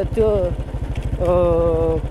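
Royal Enfield Bullet's single-cylinder engine running at low revs as the bike is ridden slowly, a steady low beat of firing pulses, under a man's voice.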